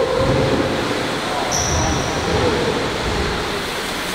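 BMX bike tyres rolling and rumbling over the park's ramps, with a couple of low thumps and a short high squeak about one and a half seconds in. A shouted 'woo' trails off at the very start.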